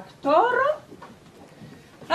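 A short wordless vocal exclamation from a woman, rising in pitch and lasting about half a second, near the start.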